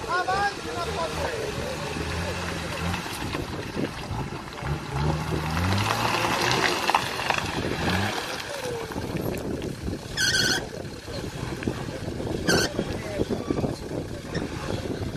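4x4 off-roader's engine labouring in low gear over a rutted mud track, its revs stepping up and down for the first several seconds. Two short, sharp, high sounds come near the end.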